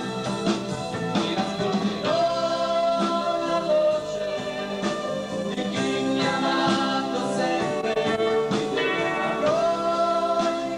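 Two male voices singing an Italian Pentecostal gospel song live with a backing band of drums and electric guitar, holding long sustained notes.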